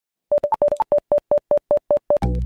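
A quick train of short electronic beeps, most at one pitch with a couple of higher ones early on, settling into an even run of about five a second.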